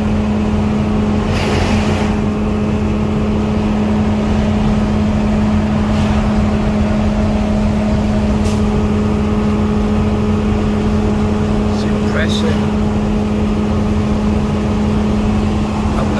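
Semi-truck engine and road noise heard inside the cab while driving: a steady drone with a constant low hum. An oncoming truck passes with a brief whoosh about a second and a half in.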